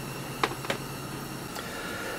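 Steady low hum of workshop room tone, with two light clicks about half a second in, from a hand handling a plastic handheld radio.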